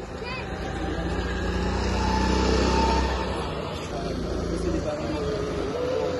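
Go-kart engines running on the track, growing louder to a peak about halfway through as karts come past, then fading, with people talking underneath.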